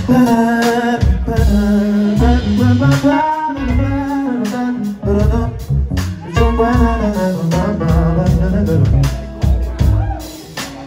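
Live blues-rock band playing loudly: electric guitars, bass and drums, with a sung melody over them.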